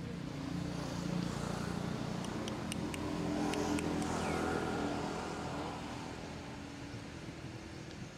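A motor vehicle's engine passing by, growing louder over the first few seconds and fading away in the second half, with a few sharp clicks in the middle.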